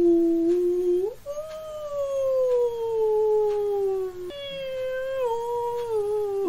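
Long, drawn-out howling in a few sustained notes, each gliding slowly in pitch. One note falls steadily over about three seconds before it breaks off and a new one starts, over faint ticks about once a second.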